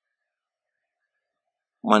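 Near silence: a dead-quiet pause with no room tone, until a man's voice starts speaking near the end.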